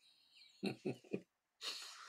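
A man chuckling quietly in three short laughs, followed by a breath in.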